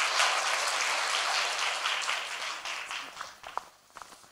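A large audience applauding, the clapping dying away about three seconds in with a few last scattered claps.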